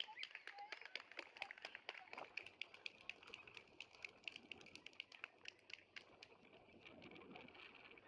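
A rapid run of faint, sharp clicks, several a second, with a faint steady high tone under them from about three seconds in.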